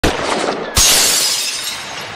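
Shattering sound effect for an animated intro: rough crackling from the start, then a sudden loud crash about three-quarters of a second in that slowly trails off.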